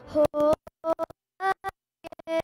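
Live hymn music, a woman singing with guitar and keyboard accompaniment, heard only in short choppy fragments: the sound cuts out abruptly to dead silence several times, most of all near the end. These are dropouts in the recorded audio.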